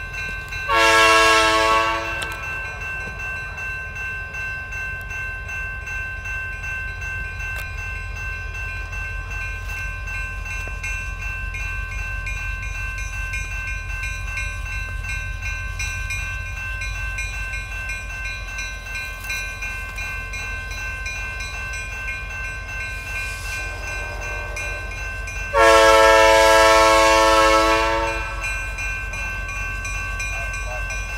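Freight diesel locomotive's multi-chime air horn: a short blast about a second in, then a longer, louder blast near the end, over the low rumble of the slowly approaching train.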